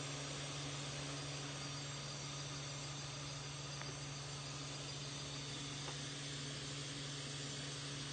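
Steady night ambience: insects chirping faintly over a continuous low hum, with no change throughout.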